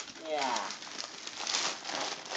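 Gift wrapping paper crinkling and rustling in quick, irregular crackles as a child handles and unwraps a present.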